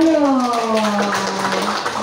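A roomful of people clapping, with one voice holding a long drawn-out call over it that slides down in pitch and holds one note before fading near the end.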